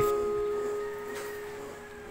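Korg digital keyboard holding a C-sharp major triad, its top note (the fifth) struck at the start and the chord's notes ringing on together and slowly fading.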